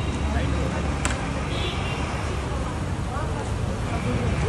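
Indistinct voices of people around, over a steady low rumble, with one sharp click about a second in.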